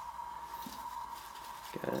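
Faint rustling of paper packing and a light knock as a hand digs inside a metal piston tin, over a steady faint high tone. A man's voice starts near the end.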